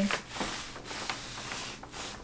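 Plastic-backed DTF transfer film rustling and crinkling as a long rolled gang sheet is pulled open by hand.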